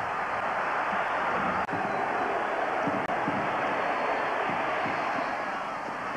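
Football stadium crowd noise, a steady even din of many voices, with a brief break in the sound just after three seconds in.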